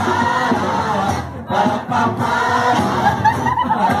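A crowd singing a mission song together, with music.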